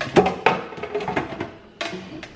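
A quick run of sharp plastic clicks and taps from pressing on the lid of a water filter pitcher, hunting for the button that must be pressed three times; one more click near the end.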